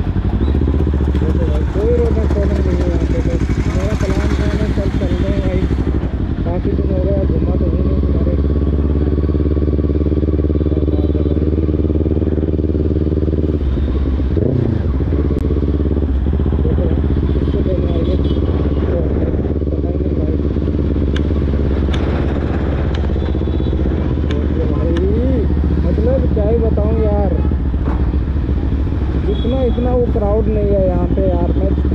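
Kawasaki Ninja sport bike's engine running steadily at low revs while riding slowly through traffic, with a brief change in revs about halfway through.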